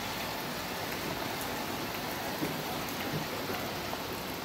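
Steady, even hiss of water, like rain falling on surfaces, with no separate drips or splashes standing out.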